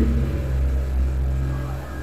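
A steady low mechanical rumble with a faint hum on top, unchanging through the pause.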